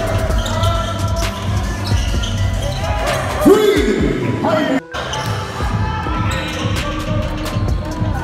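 Basketball game sound in a large gym: a ball bouncing on the hardwood with player shouts, under background beat music. The audio drops out for an instant just before the five-second mark.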